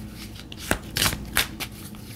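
A deck of tarot cards being shuffled by hand: several short snaps and rustles of the cards.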